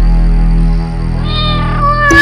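A cat's long, held meow begins just over a second in, at a steady pitch, over background music with steady low tones.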